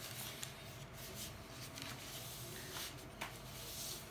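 Faint paper rustling and rubbing as a sheet of craft paper is folded and its crease pressed flat by hand, with a few soft crinkles.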